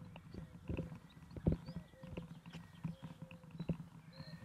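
Footsteps on grass: the person holding the camera walks at an uneven pace, a few soft thuds a second. Faint bird chirps sound in the background.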